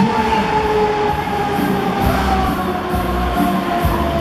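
Break Dancer fairground ride running at speed: a steady mechanical rumble from the spinning gondolas and drive, with a whine that slowly falls in pitch, under loud fairground music with a beat.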